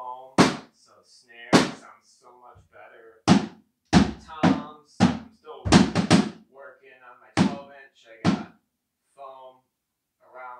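Acoustic drum kit's toms struck one stroke at a time, about ten single hits spaced unevenly, each with a short ring, to show how the drums sound with the rubber taken out and foam packed against the heads.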